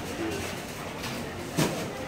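Busy indoor market hall ambience: a steady murmur of shoppers' background voices, with one short sharp click about one and a half seconds in.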